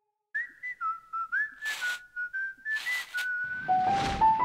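A short whistled tune with little slides between notes, broken by two brief hissing whooshes. Near the end, keyboard notes come in.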